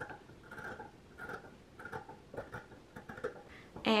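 Scissors cutting along the edge of a stitched fabric seam allowance, a series of short snips about two a second, trimming the seam down.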